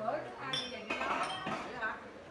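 Glass beer bottles clinking together in a toast: a few sharp, ringing clinks over table chatter.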